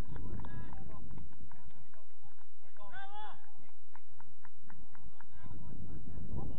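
Footballers shouting out on the pitch, one voice calling loudly about three seconds in, with scattered short clicks. A steady low rumble underneath drops away for a few seconds in the middle and returns near the end.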